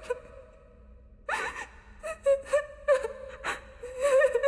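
A person gasps once, about a second in, over a steady held tone, with a few short soft breathy sounds after it.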